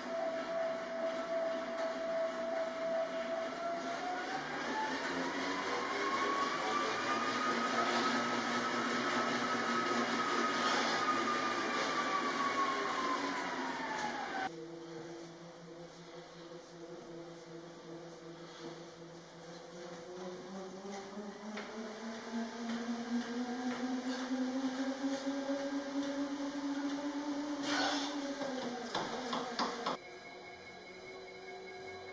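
Wattbike Atom smart bike being pedalled: a steady whine from its drivetrain that rises in pitch and then falls back as the pedalling speeds up and slows. About halfway through it cuts to the much quieter Tacx NEO Bike, whose lower hum rises and then drops near the end.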